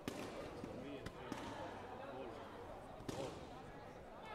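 Several sharp thuds on a background of overlapping voices in a large hall: one just after the start, two close together about a second in, and one about three seconds in.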